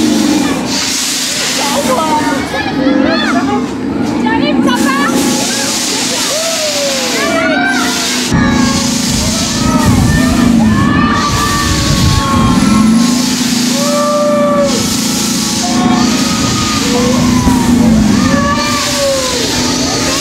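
Motorcycle-themed swing ride running, with voices calling out over a steady low hum. About eight seconds in, a strong low rumble of wind buffeting an on-board microphone sets in as the ride swings.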